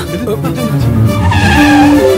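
An ambulance van's tyres screeching as it pulls up hard under braking, over background music. The screech is strongest in the second half.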